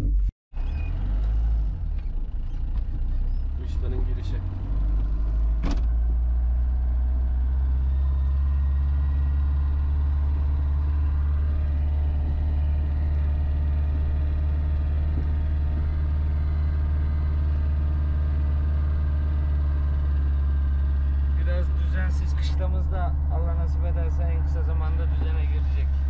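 Car engine heard from inside the cabin while driving on a dirt road. It settles into a steady low drone after a few knocks in the first seconds.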